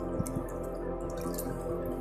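Shallow water splashing and dripping in an inflatable paddling pool as a baby pats it with her hands, with a couple of brief splashes about a second in. Steady ambient background music plays under it.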